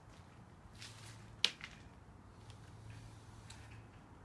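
Faint scratching strokes of a fine-tipped pen drawing on a painted board, with one sharp click about a second and a half in, over a steady low hum.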